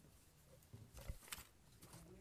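Near silence: room tone, with a few faint soft knocks about a second in.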